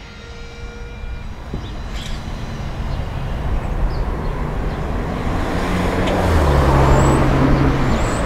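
A motor vehicle going by, its engine and road noise growing steadily louder and loudest near the end.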